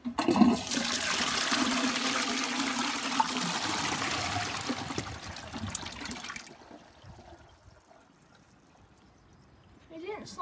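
Toilet flushing: water rushes into the ceramic bowl and swirls for about six seconds, then dies away to a faint trickle.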